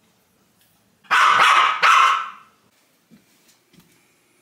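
A dog barking twice, two loud barks close together about a second in.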